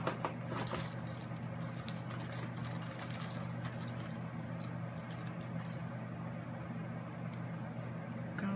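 Light clicks and taps of plastic ribbon spools being handled and set down on a craft mat, mostly in the first few seconds, over a steady low hum.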